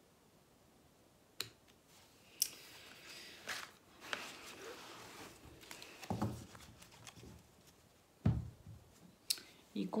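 A tarot deck being handled: a few sharp snaps and a papery rustling as the cards are shuffled, then two dull thumps against the cloth-covered table.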